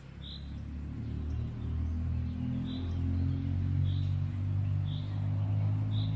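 A low steady hum with several pitches grows gradually louder. Over it a small bird repeats a single short, high chirp every second or two.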